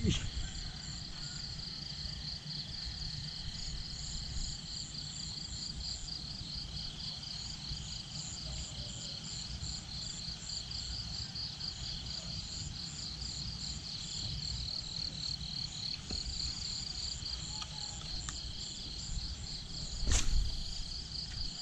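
Insects chirping in a steady, rapidly pulsing high trill, with a low rumble underneath.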